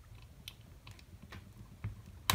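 Sharp hobby blade being wiggled through a plastic miniature's base to cut the body free, giving a few faint clicks and crunches of cut plastic.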